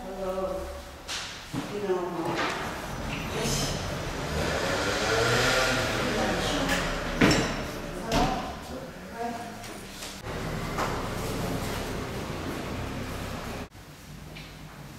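Indistinct voices of people talking, with one sharp knock about seven seconds in.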